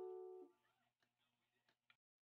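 Background music on a strummed string instrument, its last chord ringing out and fading away about half a second in, then near silence.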